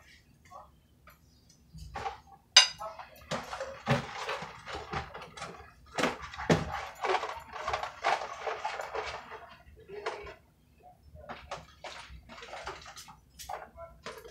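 Microwave popcorn packaging being handled and opened at a kitchen counter: a sharp knock about two and a half seconds in, then about six seconds of dense rustling of paper and plastic with another hard knock partway through, then scattered light clicks and taps near the end.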